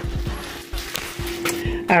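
A cardboard product box being handled and moved about, giving a few soft knocks and rustles, over a faint steady tone.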